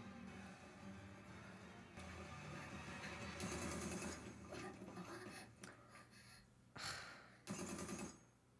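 Faint anime soundtrack playing quietly in the background: soft music and effects, with two short bursts of noise near the end.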